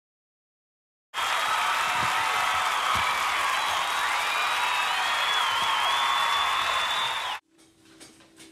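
A burst of crowd applause and cheering starts abruptly about a second in and cuts off just as suddenly near the end.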